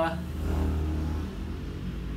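A pause in the talk filled by a steady low background rumble, with a faint, soft voice sound about half a second in.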